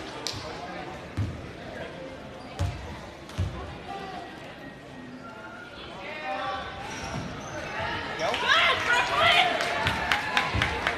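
Basketball bounced three times on a hardwood gym floor as a player readies a free throw, then the crowd's voices rise and swell into cheering after the shot.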